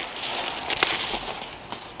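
Rustling handling noise as the exhaust pipe and its wrapping are moved, with a couple of small clicks just before the middle, fading toward the end.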